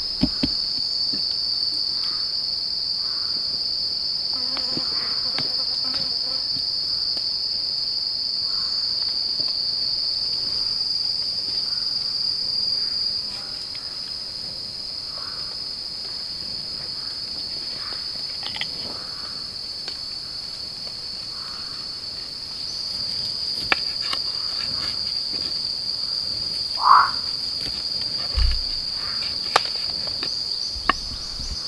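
Forest insects keeping up a steady, high-pitched drone, a little quieter for a while in the middle. A few light knocks come near the start and towards the end, and a brief call sounds near the end.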